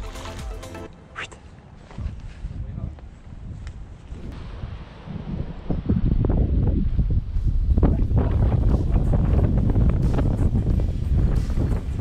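Wind buffeting the microphone: a low, uneven rumble that grows much louder about halfway through.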